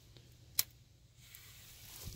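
A single sharp click a little over half a second in, a disposable lighter being struck; otherwise low, quiet background.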